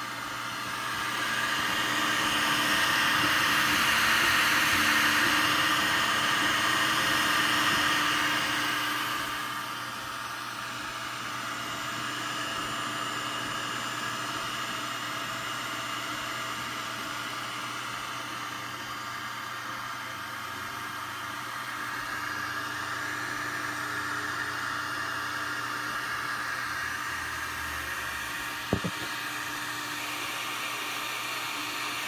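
Anycubic i3 Mega 3D printer running a print: its stepper motors whine in several steady tones over the hiss of its cooling fans. It is louder for the first several seconds, then settles to a steadier running sound, with one short click near the end.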